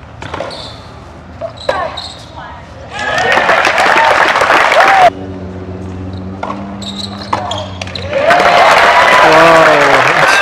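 Tennis ball struck sharply a few times in a rally, then crowd applause and cheering that swells twice, the second time near the end.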